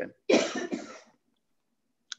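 A man coughs once, a short burst that fades out within about a second, heard over a video-call line.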